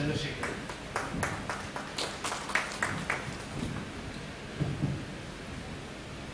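Brief, sparse clapping from a small audience: a dozen or so scattered claps over about three seconds. Two low bumps follow near the end.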